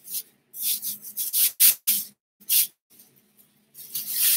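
Rustling of clothing being handled and pulled out, heard as several short scratchy bursts with gaps between them. A faint steady hum runs underneath.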